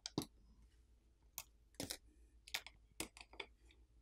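Faint, irregular small clicks and taps of a plastic pry tool and a smartphone's main board against the phone's frame as the board is pried up and lifted out.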